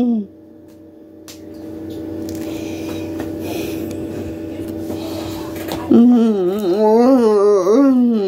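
A low steady hum with faint noise, then about six seconds in a person's voice starts a long wordless wail, its pitch wavering up and down.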